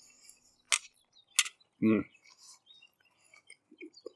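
Mouth sounds of a man eating a piece of grilled chicken thigh: two sharp clicks about two-thirds of a second apart, then a pleased 'hmm' as he chews.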